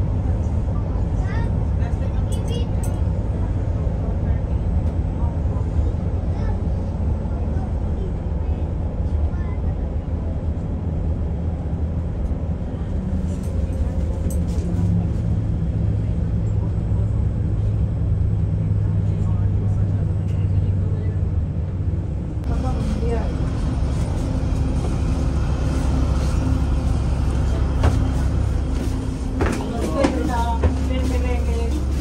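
Bus engine running with a steady low rumble; about halfway through its note rises and holds for several seconds, and about two-thirds of the way in a broader rushing noise grows louder.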